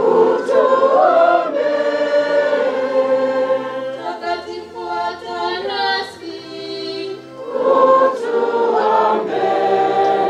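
Choir singing a hymn, voices holding long notes and moving between phrases, with a low held bass note in the middle.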